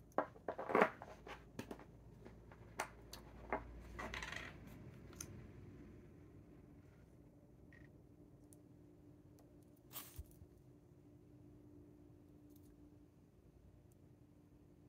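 Small clicks, taps and a short scrape as a glass ink bottle is uncapped and a plastic syringe is picked up from the desk, mostly in the first five seconds. After that it is quiet handling, with one brief rustle about ten seconds in, while ink is drawn into the syringe.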